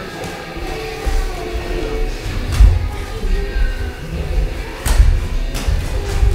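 Thuds and knocks from boxers sparring in a ring, two sharp ones, about two and a half and five seconds in, louder than the rest, over background music.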